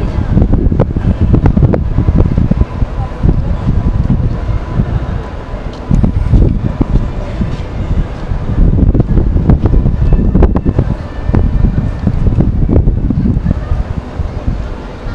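Wind buffeting the microphone: a loud low rumble that swells and drops in gusts.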